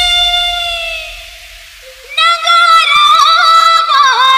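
Unaccompanied vocal intro of a Chhattisgarhi DJ remix song. A long held sung note fades out over about two seconds, and after a short near-pause a high voice comes in holding a long, wavering note. No beat yet.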